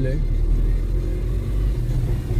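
A car driving along, heard from inside: a steady low rumble of engine and road noise.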